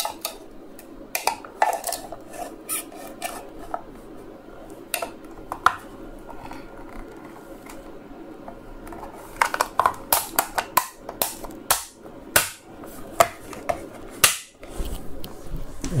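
Plastic housing of a Dyson V6 battery pack being pressed closed by hand: scattered clicks and knocks of plastic parts fitting and snapping together, coming thickest a little past halfway.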